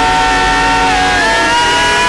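A man singing one long held note into a microphone over instrumental backing; about a second in the note slides down a step and is held again.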